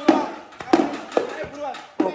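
Three sharp clacks, the first right at the start and the others about 0.7 and 1.2 seconds in, among excited voices.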